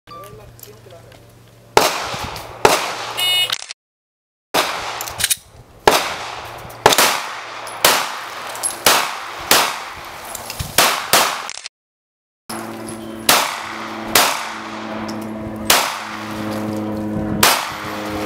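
Pistol shots from a competitor shooting an IPSC stage, fired singly about once a second with a short ring-out after each. Twice the sound cuts out completely for under a second.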